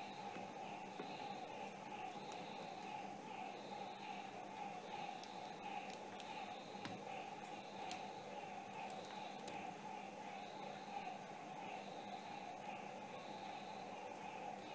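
Quiet room tone: a steady hum with a faint pulsing repeating a little under twice a second, and a few faint light clicks of hard plastic figurines being handled on a glass tabletop.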